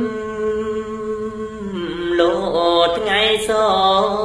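A man's voice chanting Khmer smot, the Buddhist sung recitation: a long held note, then a wavering, ornamented run about two seconds in that settles onto another long held note.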